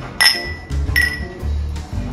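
Stemmed wine glasses clinking together in a toast, two strikes about a second apart, each leaving a short high ring. Music plays underneath.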